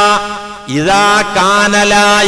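A man's voice chanting in drawn-out melodic phrases with long held notes, in the style of Arabic recitation; it dips briefly about half a second in, then carries on.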